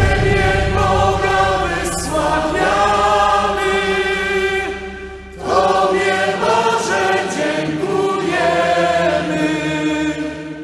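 Large choir singing in long held phrases, breaking off briefly about five seconds in and coming back in.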